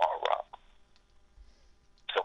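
A voice over a telephone line: a few short choppy bursts in the first half second, then a pause with only faint line noise.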